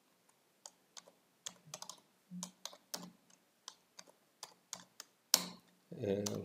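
Computer keyboard typing: soft, irregular keystrokes as code is entered, with one louder keystroke near the end.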